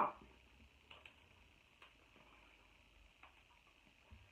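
A few faint, short clicks and cracks as a cooked king crab leg shell is broken and the meat pulled out by hand.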